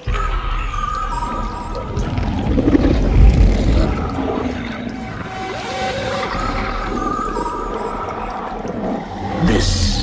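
Eerie sound-design passage from a hardstyle track's breakdown: wavering high tones over a low rumble that swells about two to four seconds in, with no kick drum.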